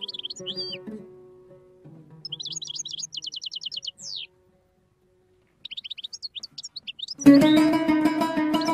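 A small songbird chirping, with a rapid trill and a falling whistle. Oud notes are plucked under it at first, and near the end the oud comes in much louder with fast plucked playing.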